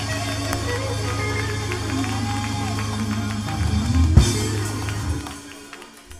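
Church music dying away at the end of a song: a low bass note held under faint instrument tones, fading out about five seconds in. A single thump cuts through about four seconds in.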